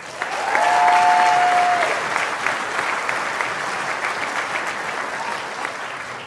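An audience applauding, swelling to its loudest about a second in and then slowly dying away, with a brief high whistle-like note about half a second in.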